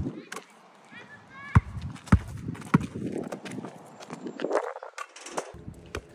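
A rubber basketball being juggled with the feet and knees: a series of irregular hollow thuds, one for each touch, some of them possibly bounces on asphalt.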